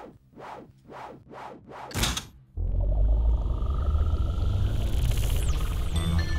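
Cartoon sound effects of a fantasy machine starting up. About five soft whooshes come first, then a louder whoosh about two seconds in. After that a steady low rumbling hum sets in, with a faint rising whine over it.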